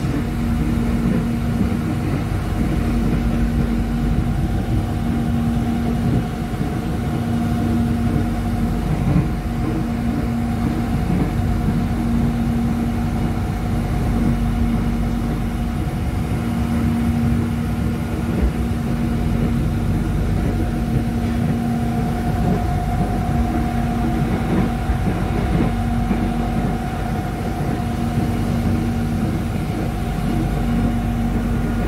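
Interior of a moving Railink airport train, an electric multiple unit: the steady running rumble of the carriage with a constant hum underneath.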